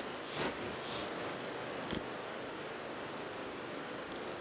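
Steady hiss of surf and wind on the beach, with a few brief rustles in the first second and a single sharp click about two seconds in.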